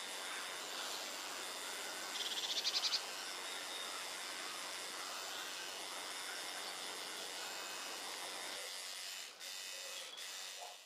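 Steady outdoor background hiss, with a short, rapid pulsing trill about two seconds in that grows louder for under a second before stopping.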